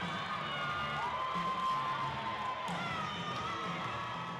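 Crowd cheering and shouting, with high voices screaming above it and one long high shout held for over a second, about a second in.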